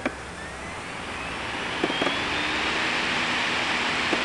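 A mechanical whine rising steadily in pitch over a rushing noise that grows louder, with a couple of faint clicks.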